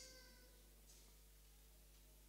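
Near silence: faint room tone with a low steady hum, after a man's amplified voice breaks off at the very start and its echo dies away.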